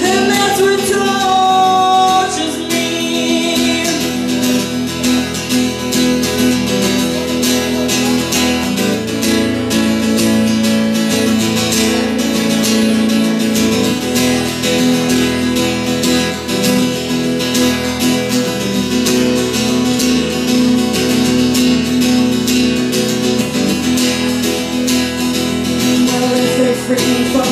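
Acoustic guitar strummed in a steady rhythm, an instrumental break between verses of a country song. A woman's sung note is held over the guitar for the first couple of seconds.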